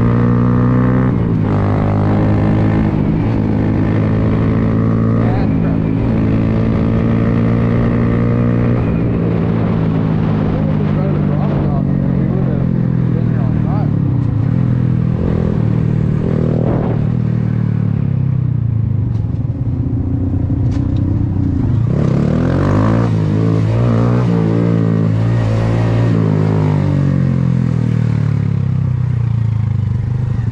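Honda Grom's small single-cylinder four-stroke engine heard from the rider's seat while riding, over a steady rumble of wind on the microphone. The engine pitch falls slowly through the first twenty seconds or so as the bike slows, climbs again a little past the middle as it accelerates, then eases off as it rolls up to stopped traffic.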